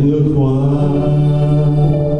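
Church praise band and singers holding one long sustained chord, steady in pitch after a brief change at the start.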